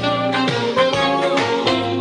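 Instrumental music played from a vinyl record on a Polyvox TD-3000 direct-drive turntable, heard through floor-standing loudspeakers in the room.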